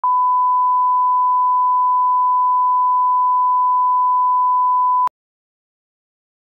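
A steady 1 kHz line-up tone, the reference tone that goes with SMPTE colour bars for setting audio levels, held for about five seconds and then cut off abruptly.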